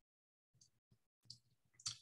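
Near silence with a few faint, short clicks, one about a second in and a slightly louder one near the end.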